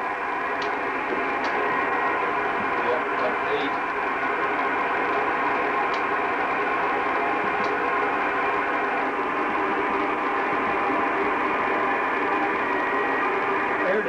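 Amateur radio receiver's speaker giving a steady hiss of static, tuned to the Space Shuttle Challenger's slow-scan TV downlink while the signal is still weak.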